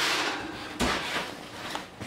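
Kitchen oven door shut with a single thud a little under a second in, just after a brief scraping rush as a pan is slid onto the oven rack.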